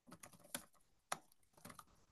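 Faint typing on a computer keyboard: an irregular run of key clicks, the sharpest about half a second and a second in.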